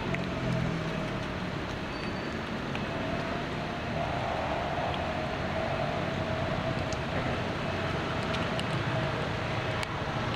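Steady outdoor background rumble with a constant mid-pitched hum running through it, and a few faint clicks.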